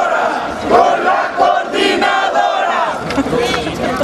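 A crowd of protesters shouting together, many voices at once and without a break.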